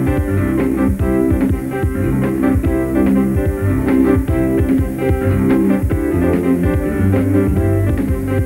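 Instrumental band music with a steady beat: keyboards, bass guitar and drums, the band's studio recording played back for a miming performance.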